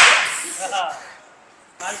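A sharp, loud hissing breath at the start that fades over about half a second, then a brief grunt or voice sound.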